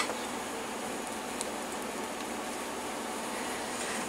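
Steady background hiss of room noise, with a faint tick about a second and a half in; the icing being piped from the plastic bag makes no distinct sound.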